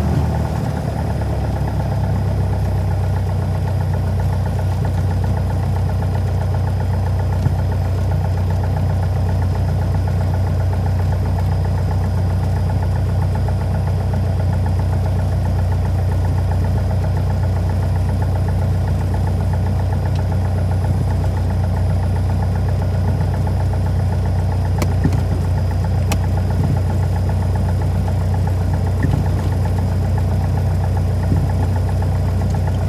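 A Piper single-engine plane's piston engine and propeller running steadily, heard from inside the cockpit. The engine note shifts up about a second in and then holds even.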